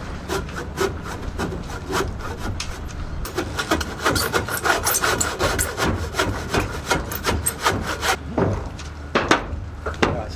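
Handsaw cutting through a wooden beam in a steady run of back-and-forth strokes, getting stronger and quicker a few seconds in, with a short break near the end before a last few strokes.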